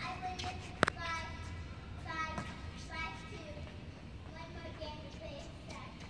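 Children's voices calling out faintly now and then, with one sharp knock of a tennis ball about a second in.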